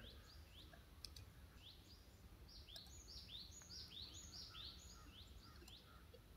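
Near silence with a bird calling faintly in the background: a run of short rising chirps, about two a second. A few faint clicks from a computer keyboard sound among them.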